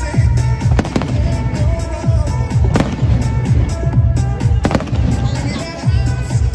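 Aerial firework shells bursting with a few sharp bangs, roughly every two seconds, over loud music with a steady bass beat.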